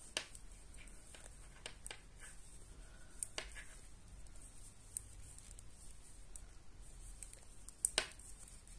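Knitting needles ticking faintly now and then while a two-by-two rib is knitted, with soft handling of the yarn; the strongest click comes near the end.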